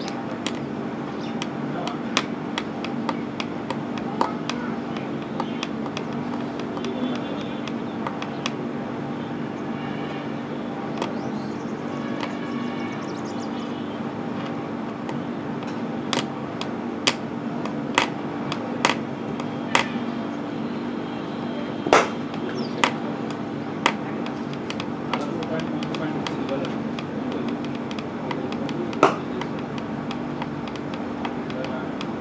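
Outdoor ambience with distant voices and a steady low hum, broken by scattered sharp knocks, most of them in the second half.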